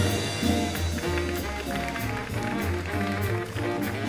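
Jazz big band playing live. A horn chord falls away right at the start, leaving the rhythm section: upright bass notes, drum kit cymbal strokes and piano chords.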